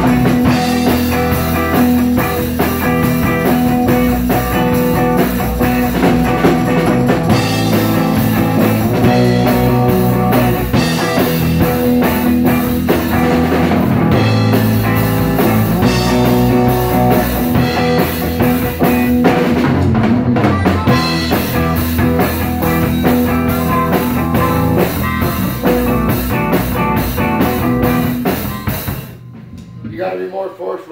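A small live band playing a blues-rock number: electric guitar, drum kit and amplified harmonica. The playing stops abruptly about a second before the end.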